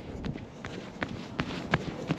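Bare feet walking quickly up a sand dune, a soft step about three times a second.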